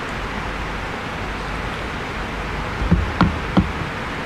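Steady hiss of room noise picked up by the podium microphone, with three short soft knocks about three seconds in.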